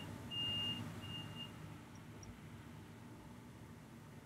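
A high-pitched electronic beeper sounding faintly in evenly spaced beeps about half a second long, stopping about a second and a half in, followed by faint low hum.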